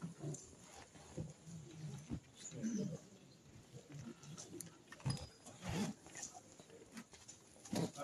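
Faint, indistinct voices murmuring, with a few knocks and shuffling movement.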